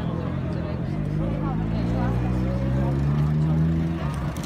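A vehicle engine running, its pitch rising slowly and getting louder as it speeds up, over crowd chatter.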